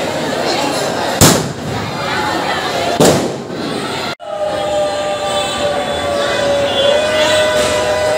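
Two loud firecracker bangs about two seconds apart, each ringing out briefly, over a crowd chattering. After a sudden cut, a long steady high tone holds through the rest.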